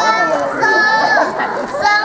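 A young girl singing into a microphone with other children joining, her voice holding long steady notes.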